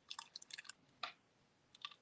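Faint small clicks and crackles of die-cut paper letters being poked out of a cutting die with a paper piercing tool, through a covering of Press'n Seal plastic wrap; most of the clicks fall in the first second, with a few more near the end.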